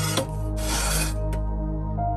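Cast iron pan scraping across a pizza oven's stone as it is pushed in, a rasp of about half a second followed by a light click. Soft background music plays underneath.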